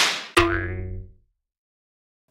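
Logo-animation sound effect: the tail of a whoosh, then a sudden twangy boing about a third of a second in that rings and fades away within a second.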